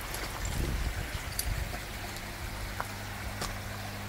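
Water trickling and splashing through koi pond filters and bakki showers, with a steady low hum underneath.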